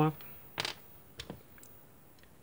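Small electrolytic capacitors being handled on a desk: a short click about half a second in, then a fainter double click just past a second.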